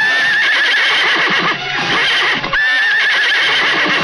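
A horse whinnying twice, each a long wavering high call lasting over a second, the second starting past the halfway point.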